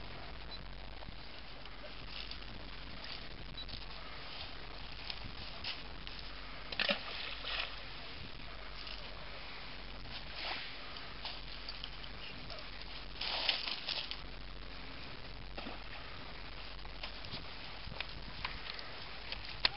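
Gentle lake water lapping on a pebble shore, with a few louder washes about seven and thirteen seconds in and scattered light clicks of pebbles.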